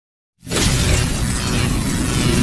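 Intro sound effect for a logo sting: silence, then about half a second in a sudden loud noisy rush with a deep rumble underneath that holds steady.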